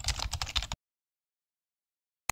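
Keyboard-typing sound effect: a rapid run of key clicks that stops abruptly under a second in.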